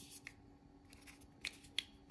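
A few faint, sharp clicks from a small plastic earbud charging case being handled and its hinged lid flipped open.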